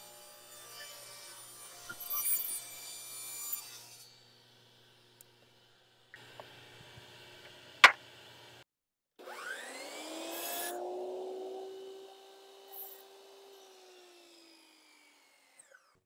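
Table saw running while cedar strips are ripped, with one sharp click about eight seconds in. Then a Metabo HPT sliding miter saw spins up with rising pitch, cuts a cedar board, and winds down with falling pitch.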